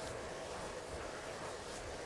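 Steady low noise of a road bike being ridden slowly uphill on a tarmac lane: tyres on the road and air moving past the microphone, with no distinct knocks or clicks.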